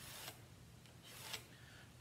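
Faint scratching of a pencil on mat board, two brief strokes, over quiet room tone.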